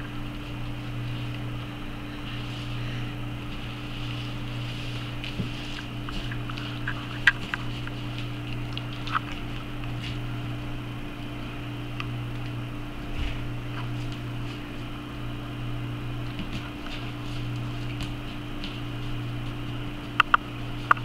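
A steady low mechanical hum throughout, with a few soft, sharp clicks and taps from a puppy playing with a cloth toy on a hard floor, the clearest about seven and nine seconds in.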